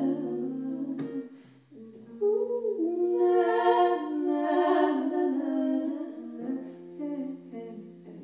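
A woman singing a slow, sustained melody with acoustic guitar accompaniment. There is a brief lull about a second and a half in.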